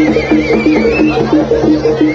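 Javanese jaranan gamelan music. A reed wind instrument, the slompret, holds a high wavering note for about the first second, over a quick repeating figure of pitched percussion at about four notes a second.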